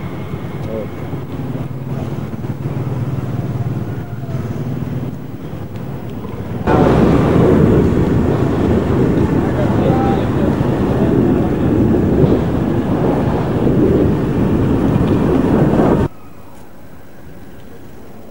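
Street sound from the camera: a vehicle's engine noise with indistinct voices. About a third of the way in it jumps suddenly to a much louder, dense wash of noise and voices, then cuts off abruptly near the end to a quieter steady background.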